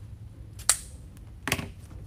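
Scissors snipping through ribbon once with a sharp click, then a duller knock about a second later as the scissors are set down on the table.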